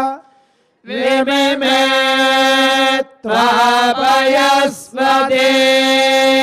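Sanskrit Vedic mantras chanted on a held, nearly steady note, with only small inflections in pitch. After a short silence at the start the chant comes in three long phrases with brief breaths between them.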